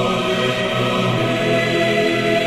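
Choir singing Russian Orthodox sacred music in sustained chords, shifting to a new chord near the end.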